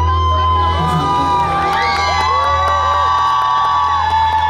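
Audience cheering and screaming in many high voices over a band holding a low sustained final chord.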